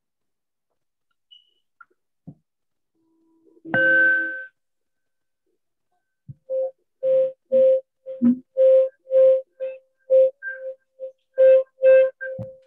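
A single musical note repeated over and over, about twice a second, starting about six and a half seconds in, after one short tone that steps up in pitch near four seconds.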